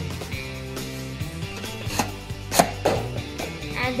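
A few sharp plastic clicks and knocks from a Nerf Demolisher 2-in-1 blaster being worked by hand, the loudest about two and a half seconds in, over steady background music.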